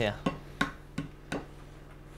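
An egg being tapped against the edge of a small plastic tub to crack it: four light, sharp knocks in quick succession.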